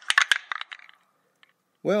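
A quick run of sharp clicks or rattles in the first second, then quiet, then one spoken word at the very end.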